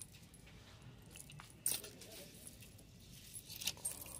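Faint metallic clinks and jingles as hands flip through clothes on a store rack: a chunky metal chain-link bracelet jangling and hangers knocking together, with one sharper clink a little over one and a half seconds in and a few more near the end.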